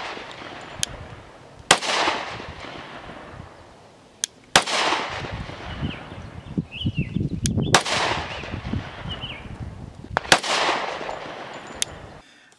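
Glock 30 compact pistol firing .45 ACP 230-grain full-metal-jacket rounds: four single shots about three seconds apart, each followed by a long echo.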